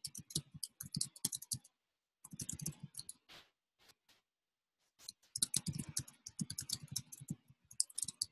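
Typing on a computer keyboard: quick runs of keystroke clicks, broken by short pauses, with a stop of about a second and a half in the middle before a longer run of typing.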